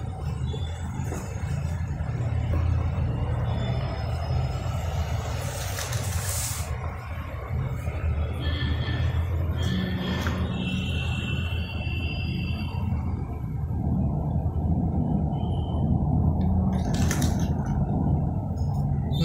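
A steady low hum runs throughout, with a few knocks and rustles as books are set under a cardboard ramp and handled, around six seconds in and again near the end.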